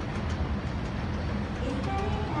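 Department-store escalator running, a steady low rumble from the moving steps as it carries the rider up toward the landing.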